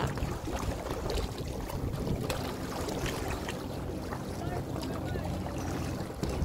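Steady lakeside noise: wind on the microphone over small waves lapping on the water.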